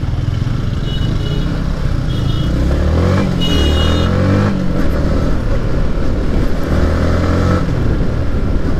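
A Yamaha MT-15's 155 cc single-cylinder four-stroke engine running under way. Its pitch rises and falls as the throttle is worked in the middle, then settles.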